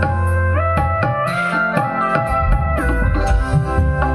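Music played loudly through large speaker cabinets driven by a four-channel power amplifier under test, with heavy bass and long-held melody notes stepping up and down; lows and mids both come through.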